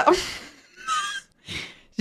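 A woman laughing into a close microphone in breathy bursts: a rush of breath at the start, a short high-pitched squeak about a second in, and another breathy puff near the end.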